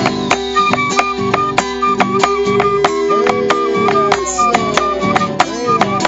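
Argentine folk gato played live on nylon-string guitar, bombo legüero and quena. The drum strokes and hand claps keep an even beat of about three a second under the quena's melody.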